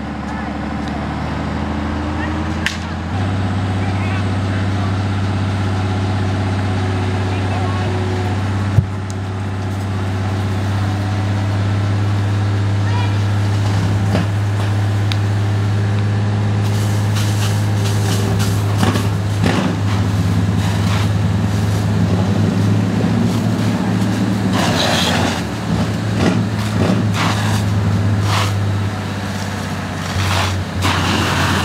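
A large engine, most likely the fire engine's, running steadily with a deep hum that grows louder about three seconds in. A sharp click comes near nine seconds. In the second half, rough irregular bursts of noise join the hum.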